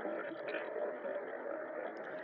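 Steady background hiss of a room, with no distinct event.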